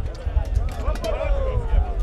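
Men shouting and calling out, urging on a pair of draft horses as they haul a weighted drag, over a steady low rumble.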